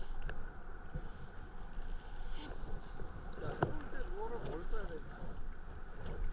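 Small waves sloshing against a plastic kayak hull with light wind on the microphone, a steady low wash of sound. A single sharp knock about three and a half seconds in.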